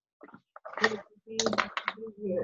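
Brief indistinct speech over a video call, then a quick run of sharp clicks over a low voice about halfway through.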